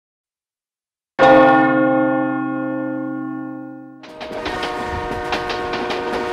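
A single loud church bell stroke, ringing out and slowly fading after about a second of silence. About four seconds in, the ring is cut off by a denser, steady layered sound with held tones and faint ticks.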